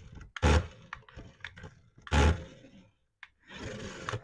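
Remote-control toy police pickup running on a tabletop, with two loud, short bursts of noise about a second and a half apart and fainter irregular noise in between.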